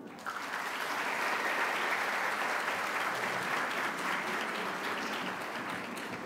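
Audience applauding: a steady round of clapping that starts just after the beginning and tapers off slightly near the end.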